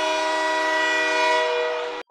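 Arena goal horn blowing one steady, many-toned chord that signals a goal has been scored. It fades out near the end, with faint crowd noise underneath.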